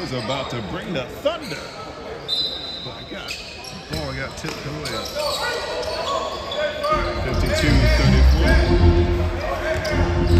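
Basketball game sounds on a gym court: voices calling out, a ball being dribbled on the hardwood, and sneakers squeaking. A deep low rumble joins about seven seconds in and the sound grows louder.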